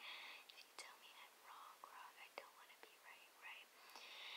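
Near silence with a girl's faint whispering and breathy sounds, and a few soft clicks.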